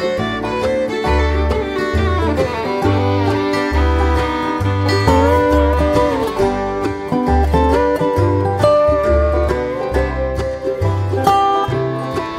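Bluegrass band playing an instrumental break: fiddle with sliding notes over banjo and guitar, with a bass note on each beat.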